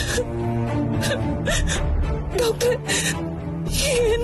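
Dramatic background score of sustained tones, broken several times by short breathy gasps, with a wavering, whimper-like tone about two and a half seconds in.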